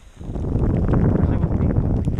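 Wind buffeting the camera microphone: a loud, low rumbling gust that starts a moment in and keeps up.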